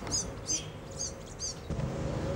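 A small bird chirping: four short, high chirps, about two a second.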